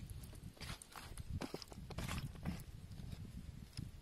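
Hands kneading small raw eels into a chili marinade on a banana leaf: soft, irregular wet squelches and slaps of slippery flesh.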